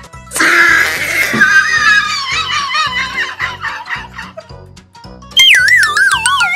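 Comedy sound effects over background music with a steady beat: a laughing sound effect starts about half a second in and fades away over a few seconds, then near the end a wobbling, falling cartoon boing.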